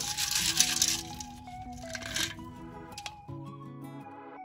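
Soil being shaken through a round metal-mesh garden sieve: a gritty rushing burst in the first second and a shorter one about two seconds in. Background music with sustained notes plays underneath.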